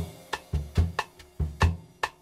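Bossa nova backing track without the saxophone part, coming in on the downbeat: a drum kit plays a light syncopated groove of bass drum thuds and sharper snare or rim strikes, about four to five hits a second.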